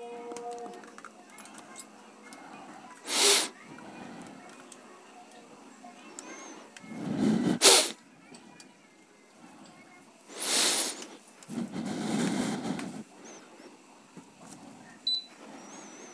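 Camera handling noise as the camera is moved and set down, with about four short rushing bursts of noise spaced a few seconds apart.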